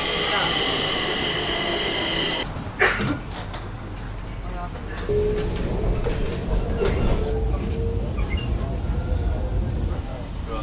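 A Stockholm metro train at an open-air station, first with a steady high-pitched whine as it stands at the platform. After a cut comes the ride heard from inside the carriage: a steady low rumble with a faint motor whine.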